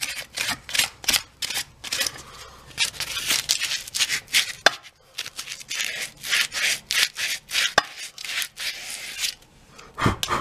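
Sandpaper rubbed by hand back and forth on a wooden hammer handle, in quick scratchy strokes about two or three a second, taking wood off so the loose ball-peen head can slide further down. Two sharp clicks come in the middle stretch.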